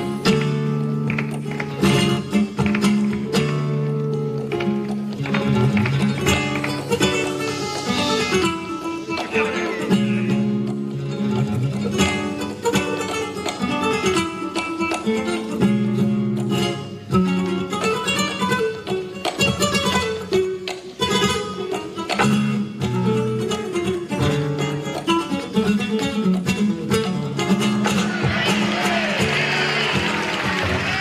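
Flamenco guitar, capoed, played live: fast runs of plucked notes broken by struck chords in flamenco rhythm. Near the end a wavering voice comes in over the guitar.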